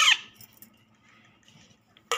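A baby parakeet's short, squeaky begging call, falling in pitch and fading within the first half second, during hand-feeding.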